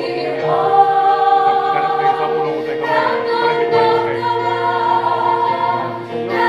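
Two women singing a worship song together through microphones, holding long notes.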